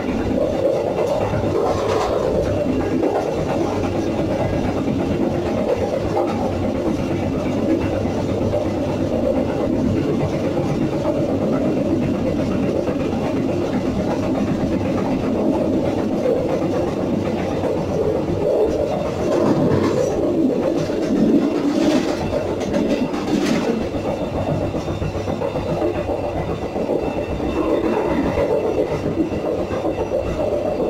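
Passenger train running along the track, heard from the open rear vestibule of its last carriage: a steady rumble of wheels on rail, with a few sharper clacks, mostly a little past the middle.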